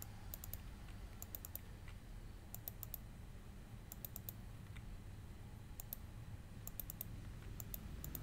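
Computer keyboard typing: short bursts of two to four quick keystrokes about every second, over a faint low hum.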